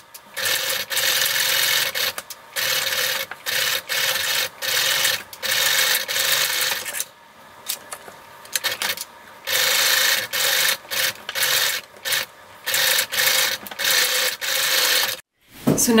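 Sewing machine stitching through thin leather in short stop-start runs, its motor humming steadily during each run, with brief pauses between as the curved seam is guided around.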